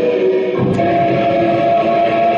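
Loud live noise-drone music: several long, steady tones held together, moving to a new set of tones about half a second in.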